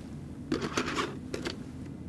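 An XDCAM Professional Disc cartridge being slid into the slot of a Sony PDW-U1 disc drive: a short run of clicks and plastic scrapes starting about half a second in and lasting about a second.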